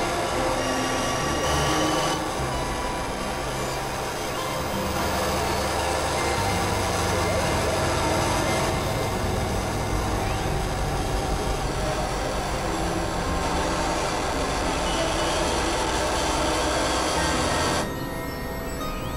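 Experimental electronic noise music: a dense, noisy synthesizer drone with held high tones over low droning notes that shift every second or so.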